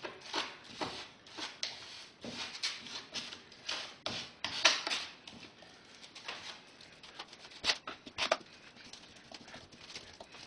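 Sculpt-a-Mold modeling compound being spread and pressed onto the end of a foam test piece: an irregular run of smearing and scraping strokes, with two sharper clicks near the end.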